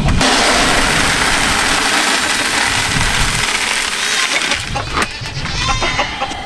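Feed pouring from a bulk feed bin's chute into a plastic bucket: a steady rushing hiss that tapers off after about four and a half seconds.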